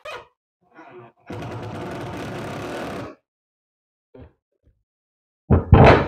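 Cordless impact driver driving a wood screw through a pine cross-brace board into the panel below, running steadily for about two seconds. A few light clicks come before it.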